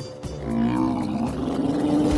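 Animated giant bear-like forest monster giving a long, deep roar that begins shortly after the start, over background music.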